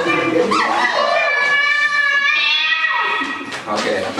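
A man's voice making long, wordless, high cries that hold and slide in pitch, with one long held note in the middle and a rise near the end.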